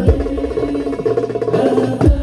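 Darbuka played in a fast fill: a deep bass stroke at the start, then a quick run of rapid sharp strokes and rolls, with another deep stroke at the end. Held accompanying notes sound underneath.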